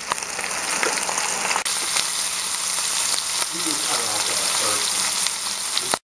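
Beef steak sizzling as it fries in hot olive oil and butter, a steady crackling hiss that grows louder and brighter about a second and a half in.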